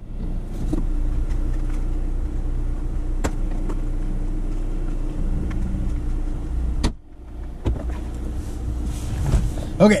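Parked car with the engine running, heard from inside the cabin through an open door: a steady engine hum with a few light clicks. A door shuts sharply about seven seconds in and the hum becomes quieter and muffled, with another door thump near the end.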